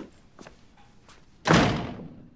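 A door slams shut about one and a half seconds in, one heavy thud that fades quickly.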